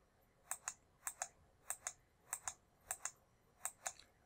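Six quick double clicks of a computer key or button being pressed and released, about one every 0.6 s. Each press steps the graphing calculator emulator's trace cursor one step along the curve.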